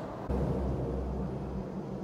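Low, steady rumble of interstate traffic passing overhead, heard inside a concrete tunnel beneath the highway; it swells about a third of a second in and fades after about a second and a half.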